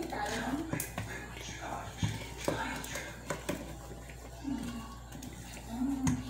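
Soft bread dough being worked by hand in a large stainless-steel pot, with a few sharp knocks against the pot, under faint murmuring voices.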